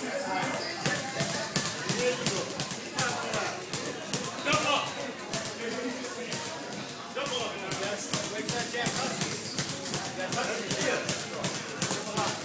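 Boxing gym sparring: a quick, irregular run of sharp slaps and thuds from gloved punches and feet on the mat, over a steady chatter of voices.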